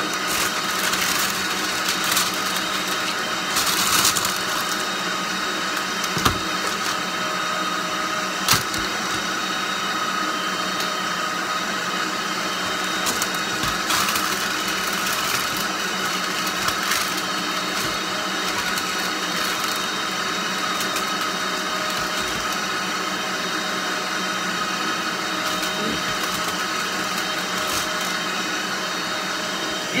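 A kitchen appliance's electric motor running steadily with an even hum, with a few short knocks and the rustle of baking paper being laid in a metal baking tray.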